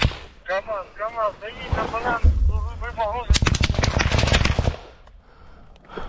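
Gunfire in a trench fight. A sharp crack at the start is followed, a little past the middle, by a burst of rapid automatic fire lasting about a second and a half. A low rumble comes just before the burst.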